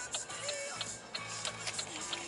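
Music playing from the car radio, with a ticking that repeats over it.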